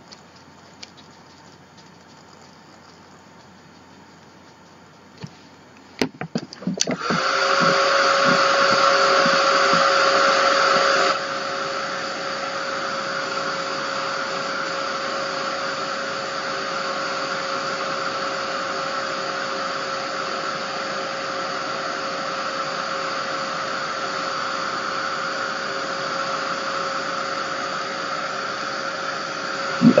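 A few handling knocks, then a small craft heat tool switches on about seven seconds in and runs with a steady blowing rush and a steady motor whine. About four seconds later it drops to a lower level and runs on steadily, heating the paint on the journal page so that it melts into the background.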